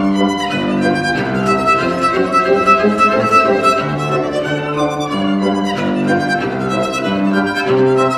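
Classical violin playing a melody of held notes over a sustained low accompaniment.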